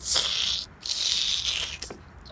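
Dried potpourri crackling and rustling as it is squeezed and crunched in a plush toy's mouth, in two long scrunches, the second starting just under a second in.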